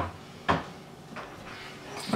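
A single sharp knock against the wooden kitchen base cabinets about half a second in as a man pulls himself up from the floor, followed by a few faint shuffling sounds.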